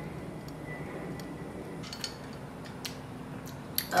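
A glass straw lightly clinking against a drinking glass of iced coffee a few times, faint, over a low steady room hum.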